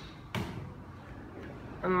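A single short knock about a third of a second in, fading quickly into low room noise.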